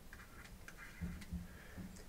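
Faint light ticks of a stylus tapping and sliding on a drawing tablet during handwriting, a few clicks in the first half, then a faint low sound in the second half.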